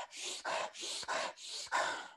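A man breathing rapidly and forcefully, about two quick breaths a second. It is a demonstration of fast, Wim Hof–style activating breathing, used to wake oneself up.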